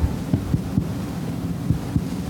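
Steady low electrical hum, with a few soft low knocks.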